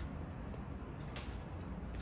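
Quiet room tone with a steady low hum and a couple of faint soft mouth clicks from closed-mouth chewing of a bite of French toast.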